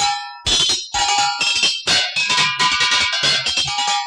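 Instrumental interlude of a film song. The music drops out briefly right at the start and comes back in about half a second in, with a regular beat and held high tones over it.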